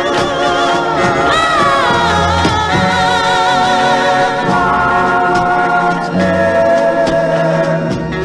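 A soul record playing: sung vocals holding long, wavering notes over a bass line.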